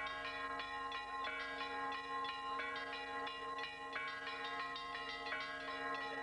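Bells chiming in a quick, continuous pattern, about three strikes a second, each tone ringing on under the next, as title music.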